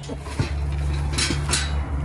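A few metallic clinks and knocks as a plastic-wrapped M11 flywheel housing and flywheel are set onto a steel hand truck, about half a second and a second and a half in, over a steady low rumble.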